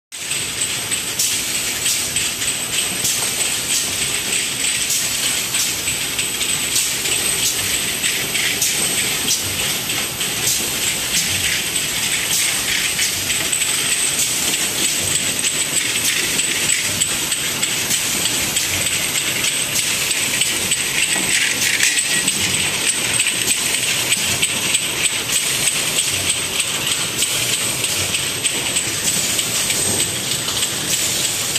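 Vertical bottle washing machine running: water jets spraying inside its enclosure with a steady, rain-like hiss, and frequent sharp clicks from the glass bottles knocking together as they are fed through.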